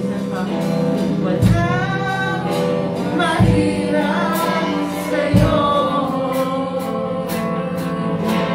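Live church praise band playing a worship song: voices singing over guitars, bass and drums, with a heavy drum beat about every two seconds and cymbal hits.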